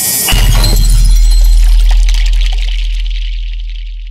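Cinematic hit sound effect: a bright high hiss is cut by a sudden deep boom about a third of a second in. The boom holds and fades slowly, while a crackling high layer dies away over the next three seconds.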